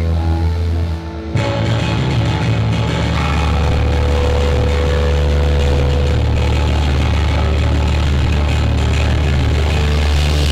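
Live rock band's electric guitars and bass through amplifiers, over a steady low amp hum: a held chord breaks off about a second in, then the guitars and bass play a riff with changing chords.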